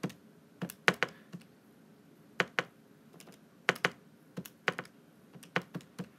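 Calculator keys pressed one after another, about sixteen sharp clicks in irregular clusters, as a subtraction (14 minus 11.56) is keyed in.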